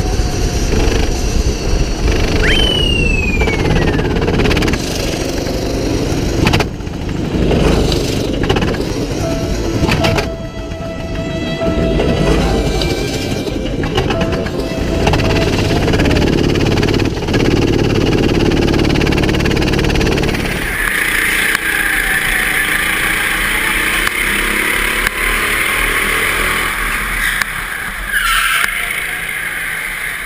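Go-kart engine running hard under an onboard camera, revving up and down through corners, with a few knocks along the way. About two-thirds through, it cuts abruptly to a thinner, higher kart engine sound with less low end.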